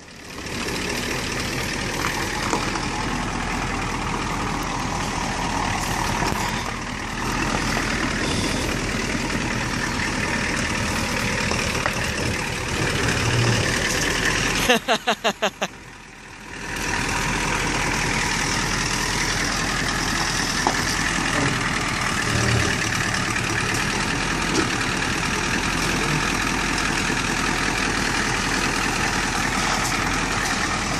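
Engine of a Ford Econoline ambulance running steadily as the van is manoeuvred back and forth to park. A short laugh comes about halfway through.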